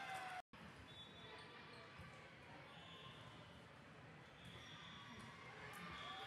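Faint indoor gym sound of a volleyball match: distant voices and the odd ball hit echoing in a large hall. The sound cuts out for an instant about half a second in.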